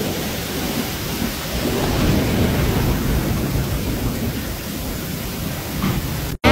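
Heavy rain pouring down in a storm: a steady rushing hiss with a low rumble underneath.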